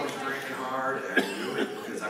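Talking with a single sharp cough a little over a second in.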